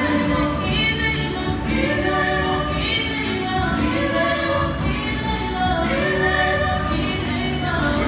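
Female vocal trio singing a gospel song through microphones, a lead voice with two background singers in harmony, the notes held and gliding continuously.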